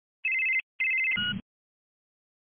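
Telephone ringing in two short trilling rings, the second cut short by a brief low thud, as if the call is answered.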